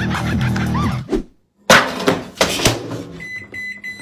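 Hamilton Beach microwave keypad being pressed: a few knocks, then one steady high-pitched beep lasting about a second near the end. Music plays in the first second before a brief cut to silence.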